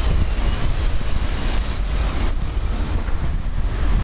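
Rumbling city traffic noise recorded from a moving bicycle in the street, with no voice. About two and a half seconds in, a thin high whine joins it and holds until near the end.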